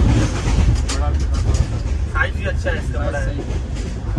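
Passenger train coach running along the track, a steady low rumble, with a few sharp clicks about a second in.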